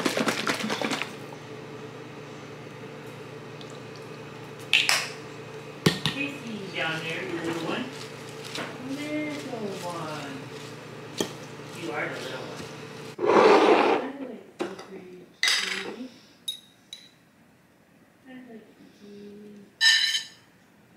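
A metal fork and knife clink and scrape against a ceramic salad bowl and plate as a salad is tossed and meat is slid onto it. A steady low hum runs underneath and stops about two-thirds of the way through.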